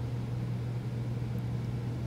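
A steady low hum with no other event.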